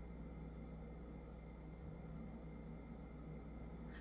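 Quiet room tone: a faint steady low hum with nothing else happening.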